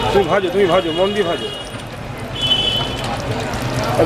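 A voice talking for about the first second over steady background noise, with a short high tone near the middle.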